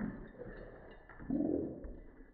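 Pembroke Welsh corgi and pit bull play-growling as they wrestle mouth to mouth, two low growls: one trailing off at the start and a second, longer one about a second and a half in.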